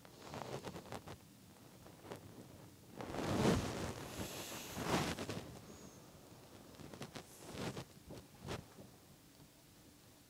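Flat brush dragging acrylic paint across canvas: faint scratchy strokes, the loudest a few seconds in, with a few short clicks near the end. The paint is a little dry, so the brush drags and skips.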